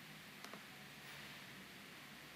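Near silence: faint room tone, with two faint clicks close together about half a second in, a computer pointer button being pressed.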